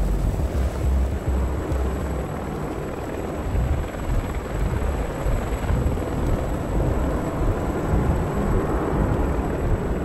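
Helicopter rotor noise, continuous over a heavy low rumble, as a sound effect in an animated battle scene.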